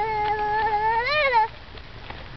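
A young child's voice holding one long sung "oh" note, steady at first, then swelling up and back down before it stops about a second and a half in.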